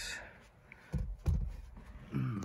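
A couple of soft, low thumps with faint clicks about a second in, from the camera being handled and moved around the car's cabin, over quiet room tone.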